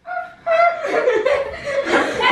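People laughing: a short laugh right at the start, then continuous laughter from about half a second in.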